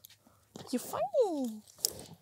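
A person's voice: one short wordless vocal sound whose pitch rises and then falls, followed by a single soft click near the end.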